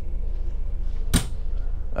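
A freezer door shutting with a single sharp knock about a second in, over a steady low hum.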